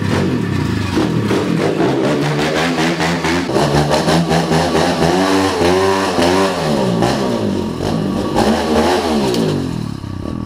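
Pit bike engine running under throttle as it is ridden, its pitch rising and falling over and over with the revs, with a deep swell up and back down around the middle.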